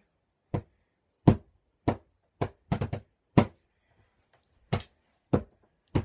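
Pillow drumming: a pillow struck about eleven times as a drum, in an uneven, halting beat, with a quick flurry of hits near the middle and a pause before the last few strokes.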